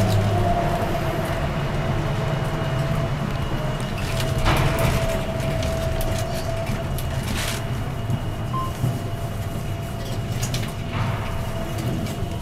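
Cabin of an electric trolleybus pulling into a station: a steady motor whine over a low running rumble, with two brief hisses about three seconds apart.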